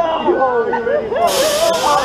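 Water jets on the Rameses Revenge ride spraying up from the pit at the upside-down riders: a loud, even hiss starts suddenly about a second in and keeps going.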